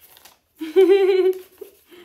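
A woman's drawn-out wordless vocal sound, about a second long with a wavering pitch, starting about half a second in: a delighted reaction to the gift in front of her.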